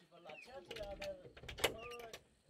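Faint, distant children's voices calling out in short bits, with a sharp click about one and a half seconds in.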